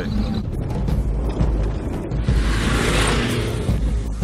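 Low, steady rumble of a Dacia Duster driving over rough desert track, with a rush of noise that swells up and dies away in the second half.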